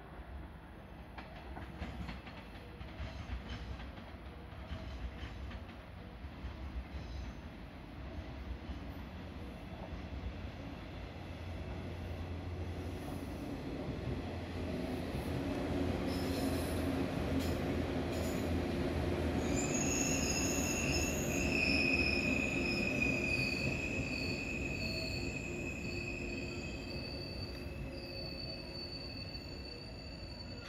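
JR West 117 series electric train running into the station, its rumble building as it passes close by. About two-thirds of the way in, a high, steady brake squeal sets in as it slows to a stop.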